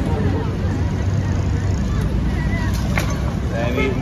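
Engine of a truck-mounted boom crane running steadily, with people talking in the background. Two faint knocks come about three seconds in.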